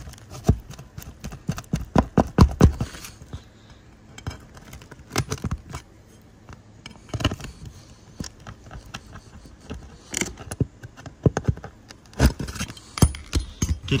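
Steel pry bar working under asphalt roof shingles to pull a roofing nail: bursts of sharp clicks, knocks and scrapes of metal on shingle and nail, busiest in the first three seconds and again in the last few.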